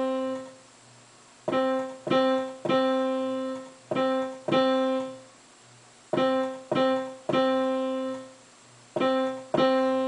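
Middle C played over and over on a digital piano, one note at a time, about ten notes in groups of two or three with short pauses between. The last note of each group is held longer.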